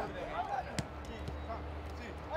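Footballs being kicked in a training passing drill: one sharp strike a little under a second in and a few lighter touches, with players' voices calling out at the start.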